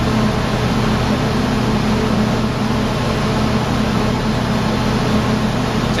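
Steady electrical hum and cooling-fan noise from a bank of Xantrex XW hybrid inverter/chargers running under load, charging the batteries while carrying the loads.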